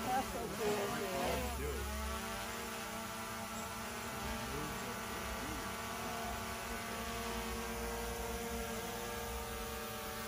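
Small quadcopter drone flying close by, its propellers making a steady multi-pitched hum that wavers in the first couple of seconds, then holds even.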